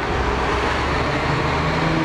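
Road traffic: a motor vehicle's engine running steadily, its low hum growing a little stronger about a second in.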